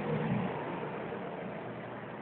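Steady motor vehicle engine and road noise, a low rumble under an even hiss, with no clear pitch.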